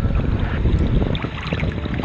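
Seawater sloshing and splashing against a waterproof action camera held right at the water's surface, a loud rumbling wash with small scattered clicks.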